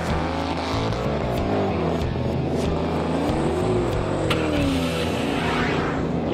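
Muscle car engine running and revving, its pitch rising and falling in arcs, with a sharp click about four seconds in.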